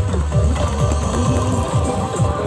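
Loud dance music with a heavy bass beat, a downward-sweeping kick about two and a half times a second, played through a mobile street sound system's speaker stack.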